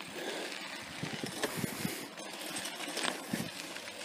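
Bicycle rolling over a dirt road: tyres crunching, with irregular small knocks and rattles over a steady hiss.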